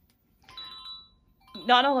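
A short ringing ding with a few clear, steady tones, starting about half a second in and fading within about half a second.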